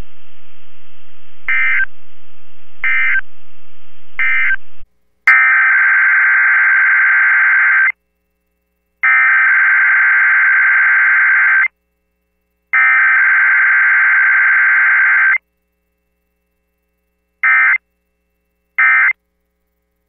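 Emergency Alert System digital data bursts (SAME codes) over NOAA Weather Radio. Three short bursts about a second and a half apart come first, then a click. Three long buzzy bursts of about two and a half seconds follow, each about a second apart, and short bursts return near the end.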